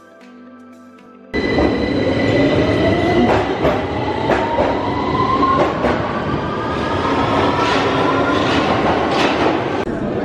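London Underground train running past a station platform, starting suddenly about a second in. Its motor whine rises in pitch as it picks up speed, over wheel clatter and rumble.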